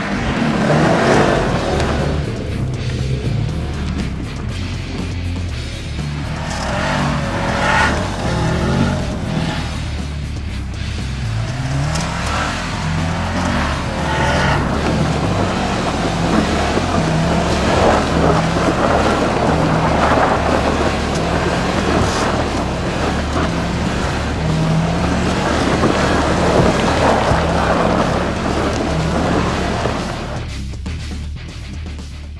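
Subaru WRX STI's turbocharged flat-four engine revving, rising and falling, as the car is slid sideways across snow and gravel. Background music with a steady bass line runs underneath.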